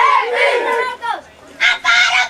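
High-pitched boys' voices yelling, one drawn-out call rising and falling in pitch, then after a short lull several boys shouting together near the end.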